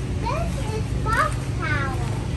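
A toddler's high-pitched babbling: three or four short vocal calls that glide up and down in pitch, over a steady low rumble.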